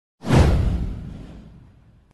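An intro whoosh sound effect with a deep boom under it. It hits suddenly about a quarter of a second in and fades away over about a second and a half.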